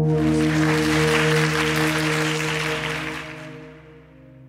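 Audience applauding over steady ambient background music. The applause starts suddenly and fades out over the last second.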